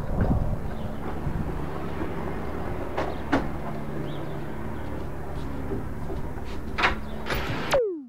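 A wooden rolling-deck pool cover sliding along its rails with a steady low hum, broken by a few sharp knocks. A short falling tone near the end, then the sound cuts off.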